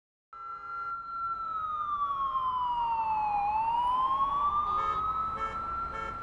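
A siren wailing after a moment of silence: its pitch falls slowly for about three seconds, then climbs back up.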